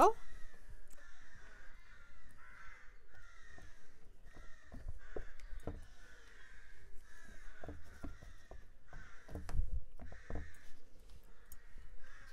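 Crow cawing over and over, a harsh call repeated about once a second. A few light clicks and dull knocks come in between, the loudest toward the end.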